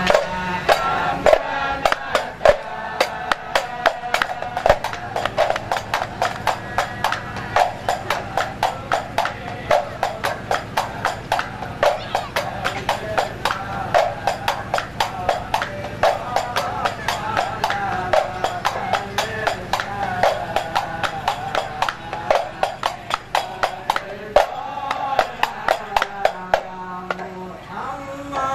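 A group of men singing sholawat together, accompanied by rebana frame drums and handclaps keeping a steady, quick beat.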